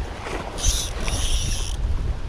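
Spinning fishing reel whirring in two short runs, together a little over a second, as a carp is hooked on the line. Wind rumbles on the microphone underneath.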